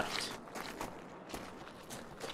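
Footsteps walking, a run of soft, irregular steps.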